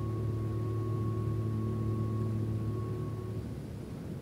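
A low held tone with overtones, steady and then fading out about three and a half seconds in, leaving a faint hiss.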